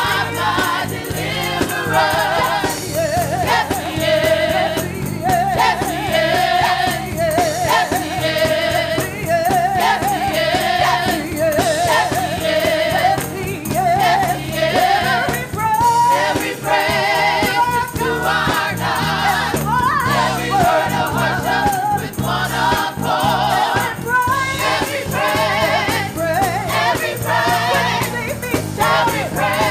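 Gospel choir singing in full voice, the sung lines wavering with vibrato, over steady low instrumental accompaniment.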